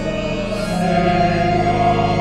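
Mixed choir singing a hymn with organ, holding long chords that shift to a new chord about half a second in.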